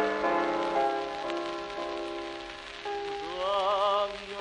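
Old record of a song with accompaniment: sustained accompanying notes changing every half-second or so, then about three seconds in a new note slides up and is held with a wide vibrato. A steady crackle of record surface noise runs underneath.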